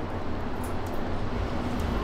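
Steady city street traffic noise: a low rumble under an even hiss.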